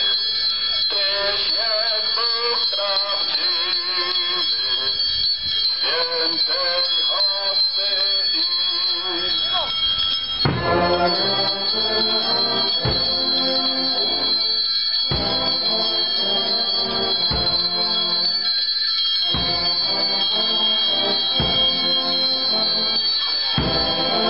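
Religious procession music: a hymn being sung for about the first ten seconds, then instrumental music with low bass notes taking over.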